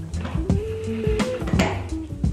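Background music with a steady bass line, over irregular light wooden knocks and clacks as the bamboo bath tray's extending arms are slid and pushed together.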